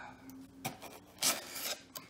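Styrofoam insulation lid being worked out of a cardboard shipping box, scraping and rubbing against the cardboard in a few rasping strokes. The strongest stroke comes just past a second in.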